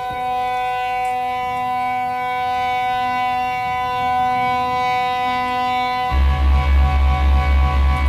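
Live 1969 psychedelic rock instrumental: a long held organ chord, joined about six seconds in by a loud, pulsing low bass beat.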